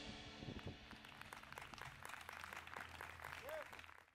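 Faint, scattered audience clapping with a few voices, as the last notes of a jazz tune die away in the first second.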